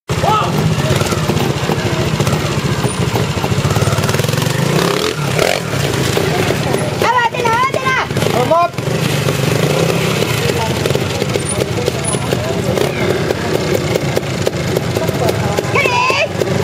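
Trials motorcycle engine running steadily at low revs throughout. Brief shouts from people nearby come about seven to nine seconds in.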